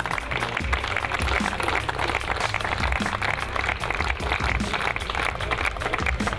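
Crowd applauding, a dense steady patter of many hands clapping, over background music.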